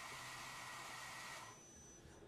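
Faint steady hiss of a CNC machine's compressed-air blast aimed at an aluminum-clogged cutter, cutting off about one and a half seconds in and leaving a faint high whine. Air alone has not cleared the chips, which have packed around the tool.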